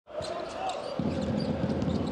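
Basketball arena crowd noise with a basketball being dribbled on the hardwood court; the crowd sound grows fuller about a second in.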